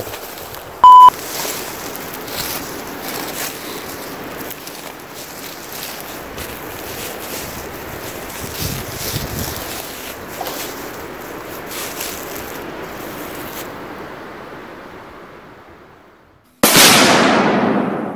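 Wind noise rushing over the microphone with light rustles, fading out over the last few seconds. A short, very loud single-pitch beep sounds about a second in. Near the end a loud burst of noise starts suddenly and dies away over about a second and a half.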